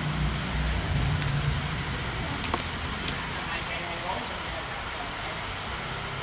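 Aluminium electrolytic capacitors clinking against each other as a hand pushes them about on a concrete floor, with a couple of sharp clicks about two and a half and three seconds in, over a steady low background hum.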